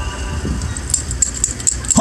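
Outdoor street ambience with a steady low rumble after the music stops. Light, scattered high-pitched clicks and jingles begin about halfway through, and a sharp knock lands right at the end.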